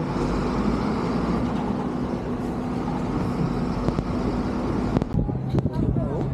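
Steady hum of a heavy diesel truck engine running, over road traffic noise. About five seconds in, the hum breaks off and a few sharp clicks follow.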